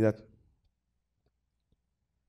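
The last syllables of a man's spoken phrase in a talk fading out, followed by near silence with two faint short clicks.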